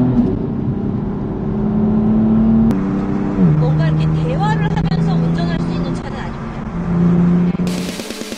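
Stage 3 JB4-tuned BMW M4's twin-turbo inline-six exhaust heard from inside the car while driving. It holds a steady engine tone that drops in pitch about three and a half seconds in, then runs on at the lower pitch.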